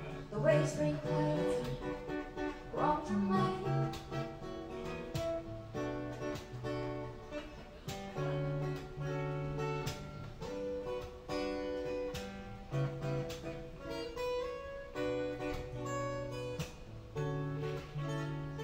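Steel-string acoustic guitar playing an instrumental passage of plucked chords in a steady pulse, with no singing over it.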